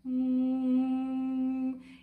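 A woman humming a closed-mouth 'mmm' on one steady, comfortable note, held for about a second and a half. It is the basic 'M' vocal warm-up, the hum that vocalise exercises start from.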